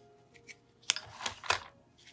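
2002-03 Upper Deck basketball cards handled in gloved hands as one card is slid to the back of the stack: soft rustles of card stock with two sharp clicks, about a second and a second and a half in.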